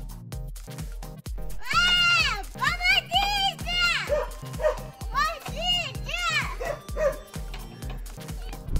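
Young children's high-pitched voices calling out in a string of short rising-and-falling cries while they swing, over background music with a steady beat.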